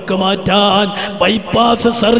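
A man chanting an Islamic devotional recitation in long held notes on a near-steady pitch, with short breaks between phrases; the pitch steps up slightly near the end.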